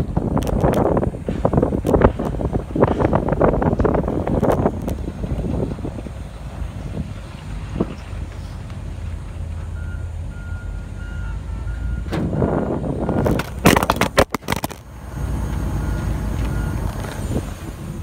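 A truck or heavy-machine engine running, with a faint back-up alarm beeping in the second half. There is clattering and scraping in the first few seconds, and a few sharp knocks about three-quarters of the way through as the dropped phone is handled.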